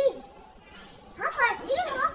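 A high-pitched, child-like voice: a short cry right at the start, then talking again from a little over a second in.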